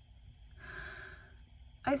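A woman drawing one breath close to the microphone, lasting about a second, before she starts speaking again near the end.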